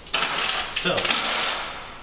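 Retractable steel tape measure being pulled out and handled, giving a quick rattling run of clicks.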